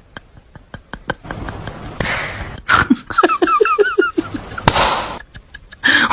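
A person's high-pitched voice in quick cries that rise and fall, lasting about a second and a half from about three seconds in. Scattered light knocks come before it, and short rushes of noise come just before and after the cries.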